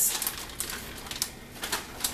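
Plastic zip-top freezer bag crinkling as it is handled and shaken out over a stockpot: a run of irregular small crackles and clicks.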